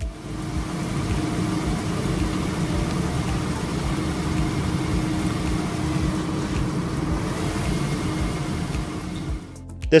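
Steady whirring noise from the CoulombFly drone's spinning electrostatic rotor, a fibre-and-aluminium-foil blade ring driven by high voltage, fading out near the end.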